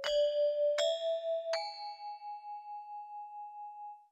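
Three struck bell-like metal notes of a film score, each stepping higher in pitch and left to ring with a wavering tone, the last one fading slowly.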